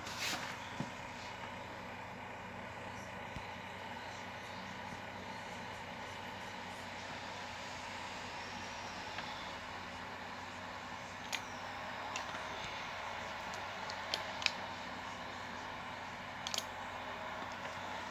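Steady hum and noise from bench equipment, with a few sharp clicks and knocks from the radio's hand microphone and gear being handled.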